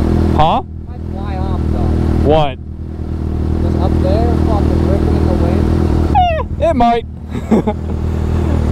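Idling inline-four sport-bike engines, a Yamaha R6 and a Kawasaki ZX-6R, running steadily with brief dips in level about half a second and two and a half seconds in. Short high, gliding sounds come in around those dips and again near the end.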